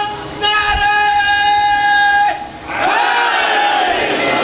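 A loud, high-pitched voice over a loudspeaker holds one long chanted note that breaks off a little over two seconds in. A second call then swells up and falls away: a devotional chant or slogan call of the kind that answers the recitation of durood.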